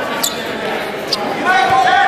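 Spectators' voices echoing in a school gym, with two brief high squeaks and a low thump from wrestlers' shoes and feet on the mat.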